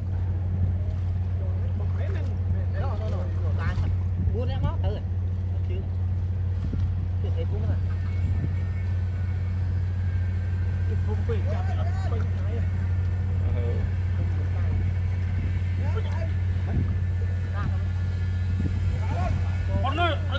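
An engine, the kind that drives a water pump, running at a steady, unchanging low drone throughout, with men's voices calling faintly over it.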